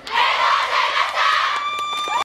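Audience cheering and applauding at the close of a dance performance, a dense wash of voices and clapping that starts suddenly. Near the end one long, steady, high note is held above the crowd.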